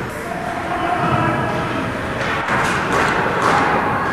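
Ice hockey play in an indoor rink: skate blades scraping the ice in short bursts about halfway through and again near the end, with a few knocks of sticks and puck, over the steady low rumble of the rink hall.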